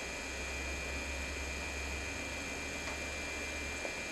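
Steady electrical mains hum with even hiss and a faint high whine: the recording's background noise, with no other sound on top.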